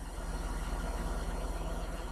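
A steady low hum with a faint hiss, running on evenly in a short gap between speech.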